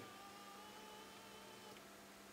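Faint steady whine of a battery-powered electric recliner's motor (Hukla CA04) driving the backrest down; its higher tones stop shortly before the end.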